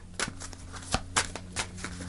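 A deck of large cards shuffled by hand: a run of irregular soft slaps and flicks as the cards are split and pushed together, about six in two seconds.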